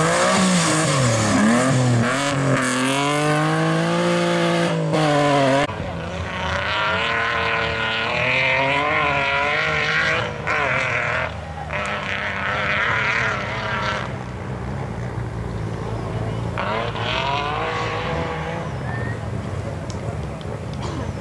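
BMW E30 rally car's engine revving hard, its pitch rising and falling through gear changes as it passes close by on loose gravel. After a cut about six seconds in, it is heard farther off, its revs still rising and dropping.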